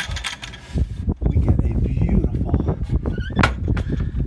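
A latched wooden hatch being pushed open with a few clicks and knocks, then wind buffeting the microphone from about a second in, with a sharper knock near the end.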